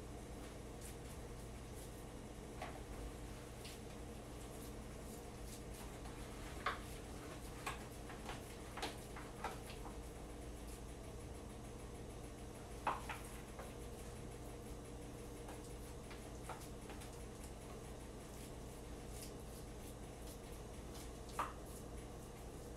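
Hands pressing and shaping raw ground-meat meatloaf mixture in a disposable aluminium foil pan: faint handling sounds with occasional short, sharp clicks from the foil pan, over a steady low hum.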